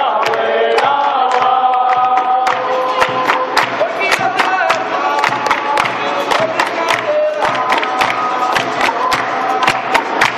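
A group sings a capoeira call-and-response song in unison, with sharp handclaps on a steady beat, roughly two or three claps a second.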